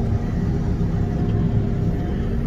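Tractor engine running steadily under load, pulling a tine weeder across a field, heard from inside the cab as an even low drone.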